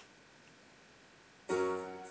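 Near silence as a CD player skips to the next track, then the new track's music starts abruptly about one and a half seconds in.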